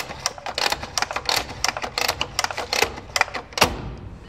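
Schneider Masterpact NT16 air circuit breaker's spring-charging lever being pumped by hand to charge the closing spring: a rapid, irregular run of mechanical clicks, with one louder clack near the end.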